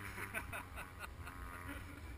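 Quiet laughter, a run of short 'ha' sounds that fall in pitch.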